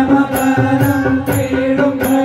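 Male voices singing a Hindu devotional bhajan in chorus to a keyboard, with a metallic percussion strike about twice a second and a low drum beat.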